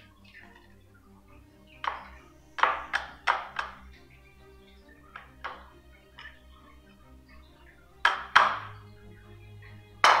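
A metal spoon knocking and scraping against a ceramic bowl as soggy cereal is tipped out into a mesh strainer, giving irregular clinks and thunks: a cluster about two to four seconds in and two louder ones near the end. Quiet background music plays underneath.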